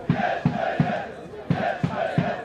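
Football supporters chanting together in the stands, celebrating a goal, with a string of low rhythmic thumps under the voices.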